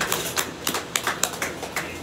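A small audience clapping: a thin round of applause made of separate, irregular hand claps.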